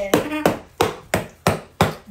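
A stick repeatedly whacking a cardboard piñata on a wooden floor, about three sharp strikes a second.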